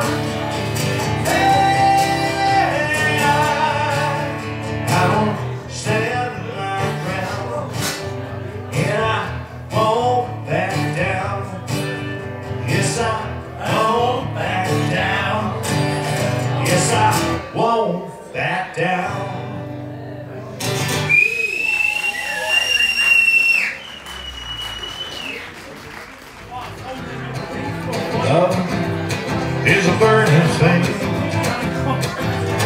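Live male vocals over a strummed acoustic guitar; near the middle the music thins out, two high steady tones sound, then after a quieter gap the guitar strumming starts up again.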